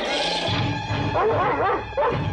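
Cartoon dog barking and snarling, with a run of short barks in the second half, over background music.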